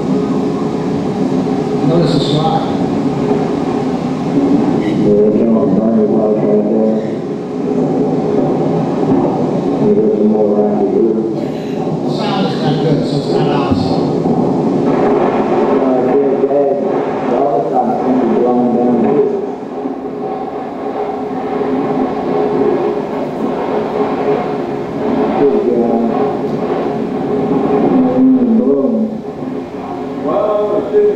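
Soundtrack of a camcorder home video of Hurricane Katrina's storm wind, played through a hall's loudspeakers: a steady, train-like rush of wind, with people in the house talking over it.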